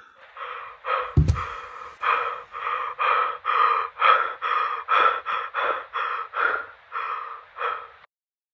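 A person gasping over and over, about two gasps a second, with a single thump about a second in. The gasping cuts off suddenly at the end.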